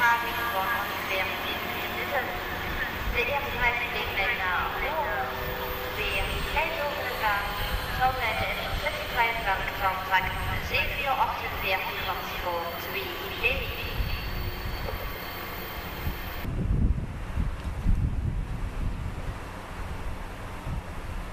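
Indistinct voices over an NS Koploper electric multiple unit running into a station platform. About three-quarters of the way through, the sound changes to a low rumble from the train.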